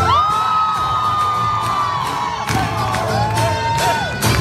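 Dance music with its beat cut out for a break. A long held note slides up, holds for about two seconds and falls away, then a second, lower note is held until near the end, with a crowd cheering and whooping over it.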